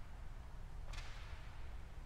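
A single quick swish of sheet-music paper being flipped about a second in, over a steady low room rumble.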